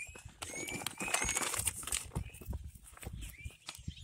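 Hands scooping and dropping compost and potting soil into a plastic tote: soft, irregular rustles and light knocks. A few short, high bird chirps come through in the first second.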